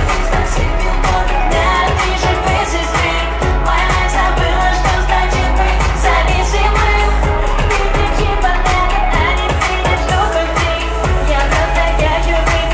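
Pop song performed live: a woman singing into a microphone over a backing track with a steady beat, played loud through the concert sound system.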